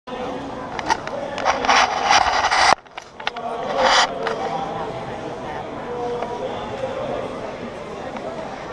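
Crowd hubbub of many voices in a large indoor arena, with loud noisy bursts in the first few seconds that cut off abruptly, and another short burst about four seconds in.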